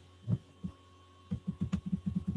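A steady low hum with two soft low thumps early on. From about a second and a half in comes a fast run of short low pulses, roughly ten a second.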